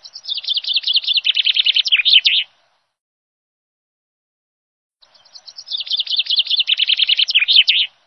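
Bird chirping in two matching bursts, each a fast run of high twittering notes lasting about two and a half seconds, with dead silence between them.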